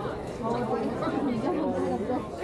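Indistinct chatter: several people talking over one another, with no clear words.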